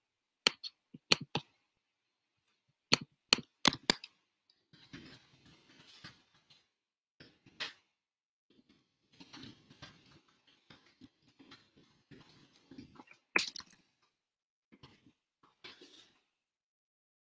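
Computer keyboard typing in uneven spurts: a few sharp key clicks in the first four seconds, softer irregular tapping in the middle, and one louder click near the end.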